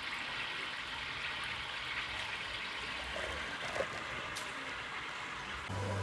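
Steady trickle of running water in a round fish tub, with one small tick a little before four seconds in.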